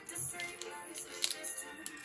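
Soft background music, with a few faint clicks as a foil booster pack and scissors are handled.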